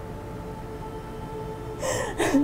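Soft background music of held, sustained notes, then near the end a sharp, breathy gasp.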